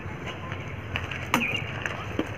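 A badminton racket striking the shuttlecock once, a single sharp crack about a second and a half in, over steady outdoor background noise with a few faint clicks.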